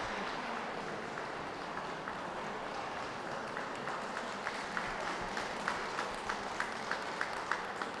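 Audience applauding, with a sharp, regular clap about three times a second standing out from about halfway through.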